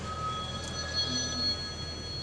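Room tone in a pause between sentences: a steady low hum with several faint, thin, steady high whistling tones.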